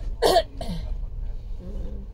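A person coughing sharply near the start, over the steady low rumble of a moving train.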